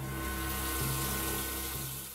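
Running water hissing steadily, with low sustained music tones beneath it.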